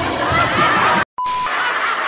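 Laughter from a TV comedy sketch. About a second in it is cut off by a brief silence and a short beep at an edit, then the laughter picks up again in the next clip.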